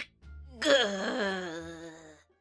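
A person's long voiced groan-sigh of exasperation, starting about half a second in, its pitch sliding slowly down and wavering as it trails off.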